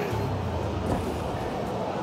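Steady low rumble and hiss of background noise in an underground station concourse, with escalators running nearby.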